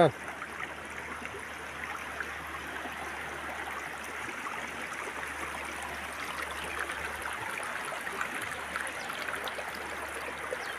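Shallow river running over rocks and stones: a steady rushing babble of water.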